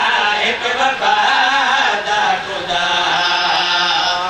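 A man's voice chanting a melodic recitation of verse, with long held notes whose pitch slowly rises and falls.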